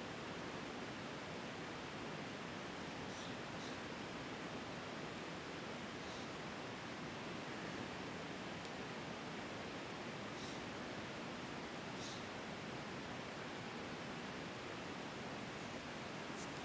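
Steady, faint hiss of background noise from a home recording microphone, with a few soft ticks.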